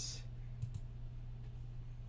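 A couple of faint computer mouse clicks over a steady low hum.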